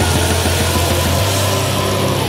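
Heavy metal music: a loud, dense wall of distorted electric guitars and bass with a strong, steady low end.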